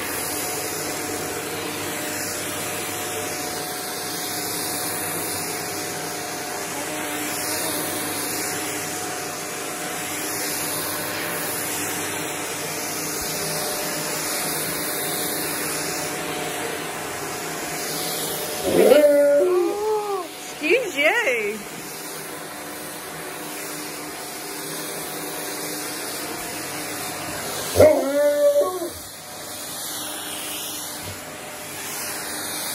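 Shark vacuum cleaner running steadily with a constant hum. An Alaskan Malamute answers it with rising-and-falling whining howls, once a little past halfway and again near the end.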